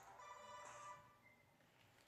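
A mobile phone ringtone playing faintly, a tune of steady pitched tones. It stops about a second in as the call is answered.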